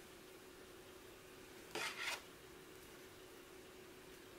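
Wooden knitting needles rubbing and knocking briefly against each other as a knit stitch is worked, a short double scrape about two seconds in. Otherwise there is only a faint steady hum.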